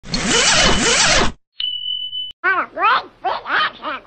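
A loud, noisy burst with a voice gliding through it. Then a steady electronic beep for under a second, cut off by a click. Then a run of short, high-pitched vocal calls that rise and fall.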